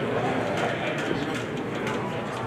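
Indistinct chatter of onlookers and officials, no single voice standing out, carried in a large room.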